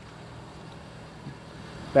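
Faint, steady background noise with a low hum, and no distinct sound event.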